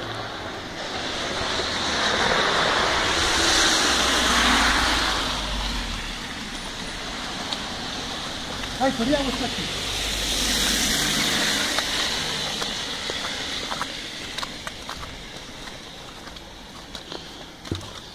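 Two vehicles passing on a wet, slushy road one after the other, each a rising and fading hiss of tyres, the first about two to five seconds in, the second about ten to twelve seconds in.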